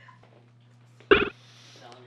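Faint steady hum, broken about a second in by one short, loud vocal sound, a single yelp-like call.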